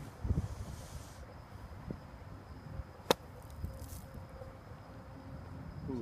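A practice golf bunker shot: a single sharp strike of the club into the sand about three seconds in, with soft thuds of shuffling feet in the sand near the start. A faint steady high insect tone runs underneath.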